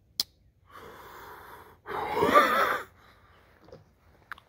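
A Case full-size trapper pocketknife's blade snapping shut: one sharp click right at the start, a sign of strong snap. A breathy exhale follows, then the loudest sound, a drawn-out wordless vocal exclamation about two seconds in.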